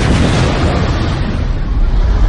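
A loud explosion rumble that starts abruptly, its deep roll running on while the higher hiss fades over about two seconds; the music breaks off for it.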